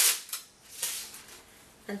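Masking tape being pulled off the roll and torn: two short ripping sounds, one at the start and another just under a second later.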